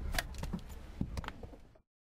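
Several clicks and knocks from a car door being unlatched and pushed open from inside, over a low rumble. The sound cuts off abruptly to silence near the end.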